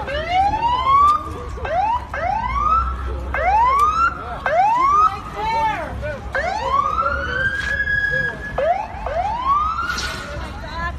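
Police car siren sweeping up in pitch again and again, about once a second, each rise cutting off and starting over, with one longer drawn-out rise about six seconds in.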